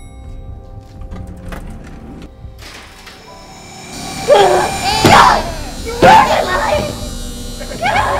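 A short laugh over background music, then loud, strained vocal cries from about four seconds in, with a shorter one near the end.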